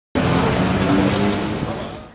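Outdoor ambience of road traffic noise with people talking in the background, fading down near the end.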